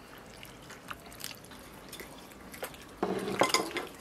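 Chopsticks picking at a braised fish in a metal tray: a few faint, light clicks and wet sounds. About three seconds in, a louder sound starts.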